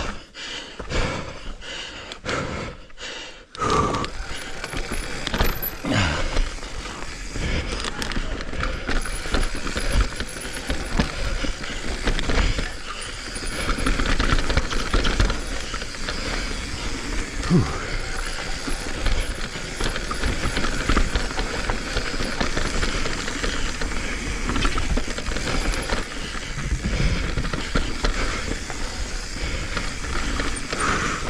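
Full-suspension mountain bike descending a rocky, rooty dirt trail, heard close up from a chin-mounted camera: a steady rush of wind and tyre noise over dirt, broken by knocks and rattles from the bike over roots and rocks. The first few seconds are choppier, with separate knocks, before the rush becomes continuous.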